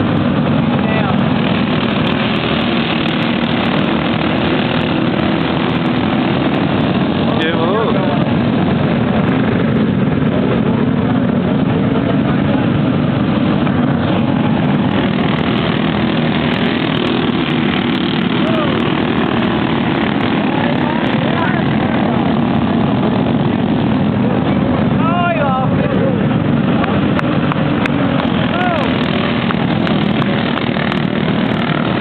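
Go-kart engines running at racing speed, a steady loud drone whose pitch swells and falls a few times as karts pass.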